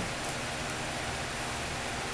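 Steady background hiss with no other sound: a pause between spoken phrases.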